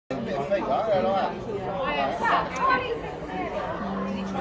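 Chatter: several people talking, their voices overlapping.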